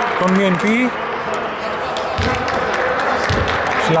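A basketball dribbled on a hardwood court: two dull bounces about a second apart in a large, echoing hall.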